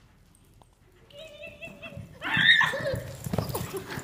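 Pony neighing about a second in, then a loud cry, then its hooves thudding on the arena's sand as it runs.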